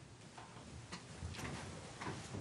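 A roomful of people sitting down: faint scattered clicks and knocks of chairs and shuffling feet, sparse at first and busier from about a second in.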